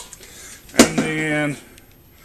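A man's voice holding one drawn-out syllable about a second in, starting with a sharp click; otherwise quiet room tone.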